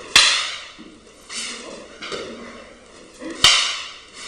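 Wooden fighting sticks clacking against each other twice, about three seconds apart. Each sharp crack rings out in the hall.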